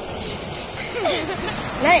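Steady rushing noise of surf breaking on a sandy beach. A high child's voice calls out briefly about a second in and again near the end ("naik").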